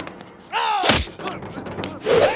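A single heavy thump of a film fight punch effect just under a second in, with a man's shout falling in pitch right before it.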